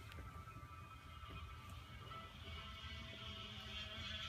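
Faint audio from a video playing on a phone's speaker, with a few steady tones and a haze that swells slightly in the second half, over low room noise.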